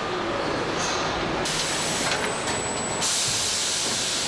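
Machinery noise on a car assembly line, a continuous din with two long bursts of loud hissing, the first with a thin high whistle in it.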